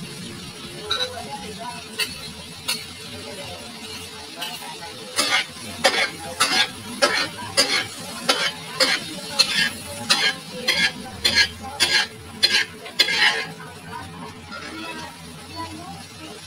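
Egg sizzling in a wok while a metal spatula stirs it, scraping and clinking against the pan. The clinks come about twice a second from about five seconds in, stopping a couple of seconds before the end.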